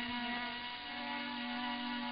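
A quiet, steady held musical note with overtones: a sustained drone lingering on after the louder instrumental introduction drops away.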